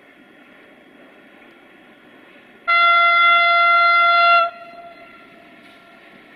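A Romanian 060-EA (LE5100) electric freight locomotive sounds one long, steady horn blast of a single note, about a second and a half long, starting about halfway through and cutting off sharply. A faint steady noise runs underneath.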